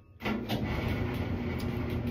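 A machine starts up about a quarter second in and runs with a steady hum over a low rumble.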